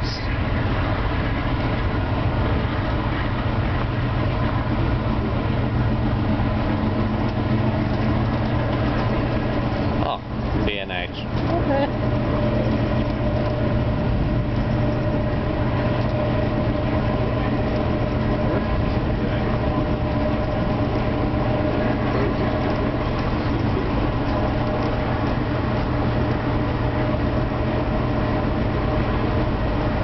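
Steady running noise of an Amtrak passenger train heard from inside the coach: a constant low rumble with a steady hum, briefly broken about ten seconds in.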